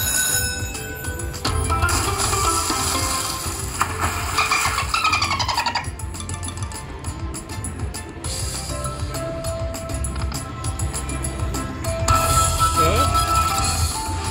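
Lightning Cash Magic Pearl slot machine playing its free-games bonus music and chime effects as a retrigger awards extra free games. The tones include a run of falling notes a few seconds in and a rising glide near the end.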